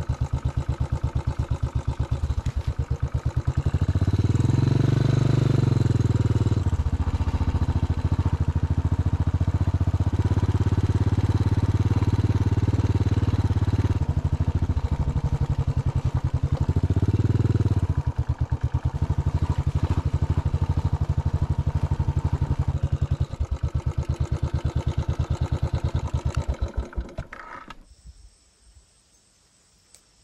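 Motorcycle engine running at low speed as the bike rides slowly over a grassy trail, with an even firing pulse. It revs up briefly twice, then stops near the end.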